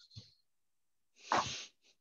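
A man's short, sharp intake of breath, a bit over a second in, taken in a pause between phrases.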